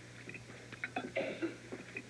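Quiet dinner-table sounds: a few light clicks of cutlery on plates and a brief, faint vocal sound about a second in, over a steady low hum.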